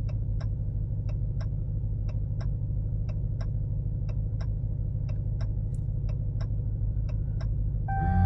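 Ram TRX's supercharged 6.2-litre V8 idling steadily, with the hazard-light flasher ticking in pairs about once a second as the four-ways flash. A chime sounds right at the end as the PIN countdown runs out and the truck locks.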